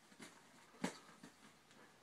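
A kitten playing with a fuzzy ball toy on a bed: mostly quiet scuffling, with one sharp click a little under a second in.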